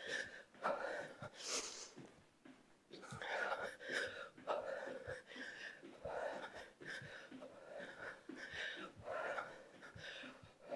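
A woman's hard, rhythmic breathing during jumping jacks: short, quick breaths in an even rhythm of roughly one to two a second.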